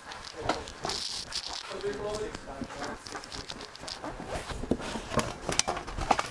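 Hands handling a printed plastic sign-face sheet on a worktable: rustling and crinkling of the sheet with many scattered taps and clicks.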